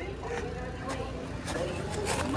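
Outdoor ambience: a steady low rumble with faint distant voices, and footsteps about twice a second.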